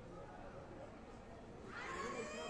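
Faint murmur of distant voices in a large hall, then near the end a short, high-pitched yell that rises in pitch.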